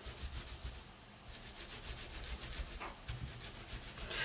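Flat hands rolling a wet, soapy wool cord back and forth on a terry-cloth towel: faint rubbing strokes repeating several times a second, the wool fibres being felted together into a cord.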